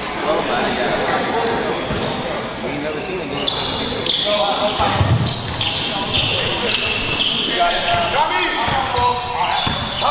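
Basketball bouncing on a hardwood gym floor during a game, with sneakers squeaking in short high bursts through the middle, and the shouts and chatter of players and spectators echoing in the hall.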